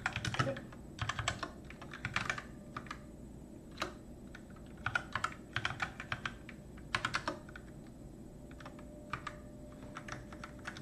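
Computer keyboard being typed on in short bursts of keystrokes, with pauses between the bursts and a lull of a second or so shortly before the end.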